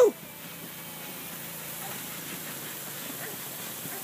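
Lawn sprinkler spraying water across a trampoline: a steady hiss of spray.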